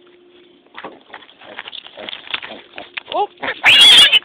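A pig grunting in short bursts, then a loud squeal near the end.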